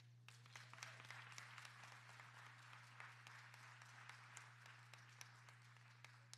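Faint applause from a church congregation: many hands clapping together, starting a moment in and thinning out near the end.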